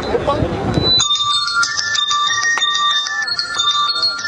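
Crowd voices and shouting that cut off about a second in, as a rap instrumental beat starts: bell-like chime tones held over light ticking percussion.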